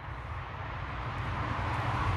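Distant engine noise with a rushing sound that grows steadily louder, as of something approaching.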